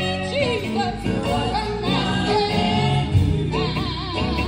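Women's vocal group singing live into microphones, held notes with wide vibrato, over a band of keyboard, drums and electric guitar, amplified through a PA.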